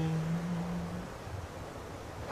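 The last held note of a priest's chanted 'let us pray' fading out in the church's reverberation about a second in, followed by a quiet pause of faint room noise.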